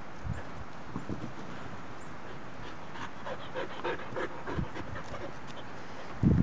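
Black Belgian Shepherd puppies at play: a run of short, high-pitched whines and yips between about three and five seconds in, over a steady background hiss, with a few soft low thumps.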